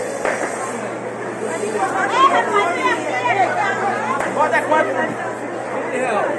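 Chatter of people talking in a busy market hall, with one voice standing out more clearly in the middle.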